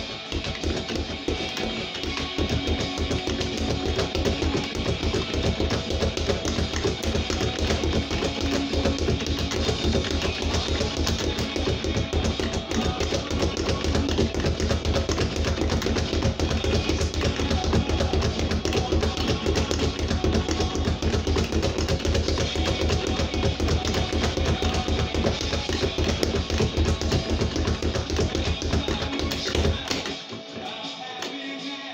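Heavy rock music with electric guitar and drums, over the fast, continuous strikes of a speed bag being punched.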